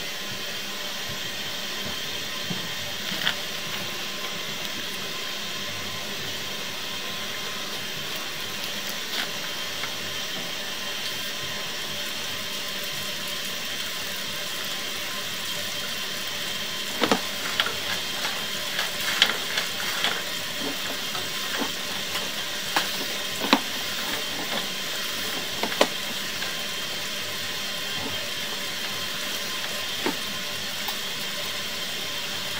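Steady hiss, joined about halfway through by a run of irregular clicks and knocks as the sewer inspection camera's push rod is fed down the pipe.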